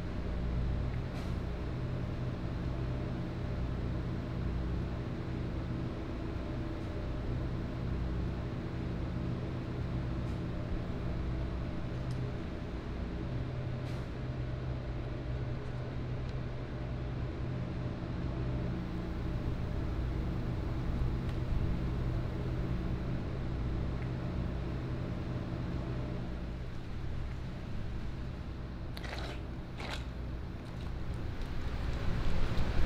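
Steady low hum of a stopped NJ Transit commuter train standing at the platform, with a few faint ticks and a brief higher sound about a second before the end.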